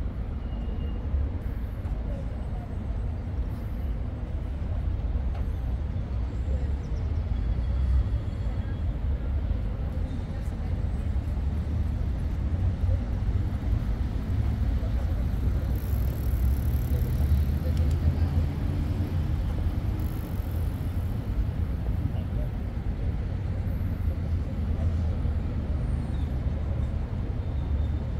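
Steady city street traffic noise with a heavy low rumble, and indistinct voices of people nearby.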